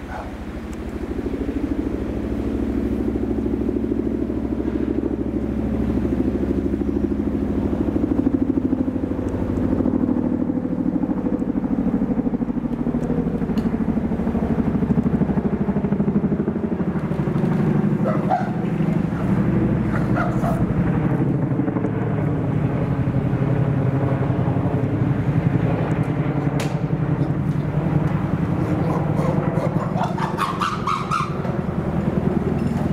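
A steady low engine drone, its pitch drifting slowly up and down.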